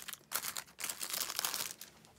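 Clear plastic shrink wrap crinkling and crackling as it is peeled off a CD album case by hand, a quick run of crackles that dies down near the end.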